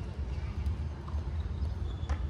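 Wind buffeting the microphone as a steady low rumble, with a few faint light knocks from play on a hard tennis court.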